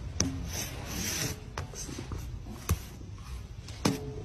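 A cat's fur rubbing against the phone right at the microphone: a scratchy rustling with a few sharp clicks scattered through it.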